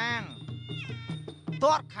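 Ringside fight music in which a shrill reed pipe, typical of the sralai that accompanies Kun Khmer bouts, plays an arching phrase and then held high notes that step down in pitch. A commentator's voice comes in over it near the end.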